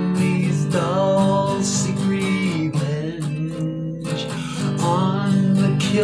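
Song with strummed acoustic guitar and a sung melody.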